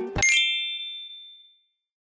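A single bright, bell-like ding closes the plucked-string background music. It strikes just after the last note and fades out over about a second and a half.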